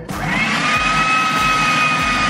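Food processor motor switching on and running, its whine rising as it spins up and then holding steady as the blade blends a thick cashew cream.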